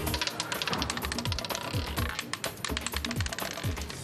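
Roulette ball rattling over the pocket dividers of a spinning roulette wheel: rapid irregular clicking that thins out as the wheel slows, over tense background music.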